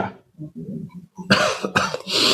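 A person coughing: low throat sounds, then a loud, short cough about one and a half seconds in.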